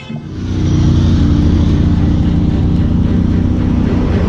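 Cars driving past on a highway: a loud, steady rush of engines and tyres that swells up over the first second and then holds.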